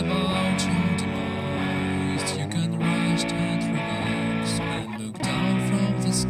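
Instrumental break in a song: guitar playing held chords over bass, with no singing, dipping briefly about two and a half and five seconds in.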